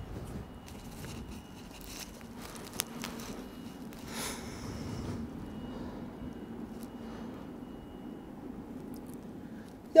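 Quiet room with faint rustling and soft breathing of people shifting on yoga mats, with a few soft clicks and a louder breath about four seconds in.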